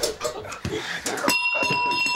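A single bell-like metallic ring struck sharply about a second and a half in, holding a clear, high tone for about a second, after some knocking and rustling.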